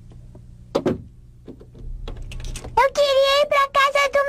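A few soft clicks and a single knock, then from about three seconds in a loud, high-pitched voice held on one long note, broken off several times by brief gaps.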